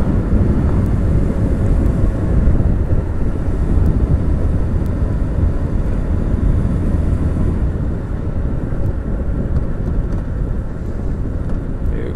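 Wind buffeting a motorcycle-mounted microphone, with a Kawasaki ZX-6R's inline-four engine running at road speed underneath. The rush drops slightly after about eight seconds.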